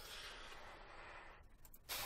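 Very quiet room tone: a faint, soft hiss for about the first second and a half, then almost nothing.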